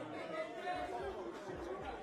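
Several men's voices talking over one another amid crowd chatter in a large room.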